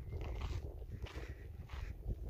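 Footsteps crunching on a dry gravel-and-dirt path in an irregular series, with wind rumbling on the microphone.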